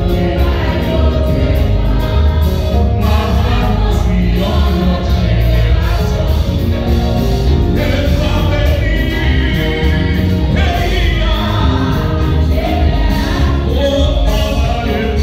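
Church congregation singing a gospel worship song together, loud and continuous, over a steady deep bass.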